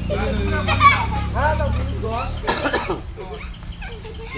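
Voices of people talking and calling out on the field, over a low rumble that stops a little after two seconds in; a short sharp noise comes about two and a half seconds in.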